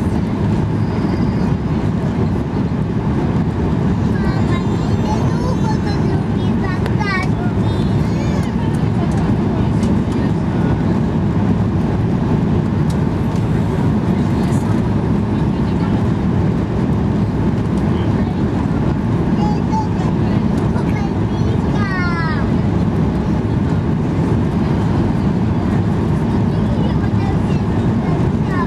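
Steady, loud cabin noise of a Boeing 737-8200 on final approach, heard from a window seat over the wing: engine drone and rushing air over the extended flaps, with no change in level.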